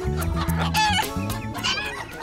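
A chicken clucking in short, pitched calls: a run of clucks in the first second and another near the end, over background music.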